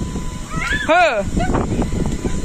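A toddler's short, high cry that rises and falls in pitch, about a second in, followed by light ticks and scrapes.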